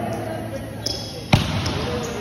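A ball hitting hard once, a little over a second in, amid the chatter of voices.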